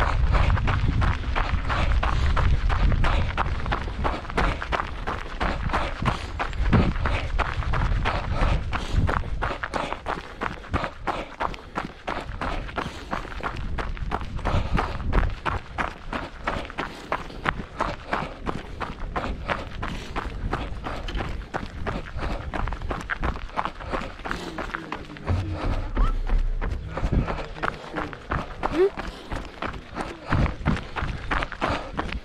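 A runner's footfalls on a gravel trail in a quick, steady rhythm of strides.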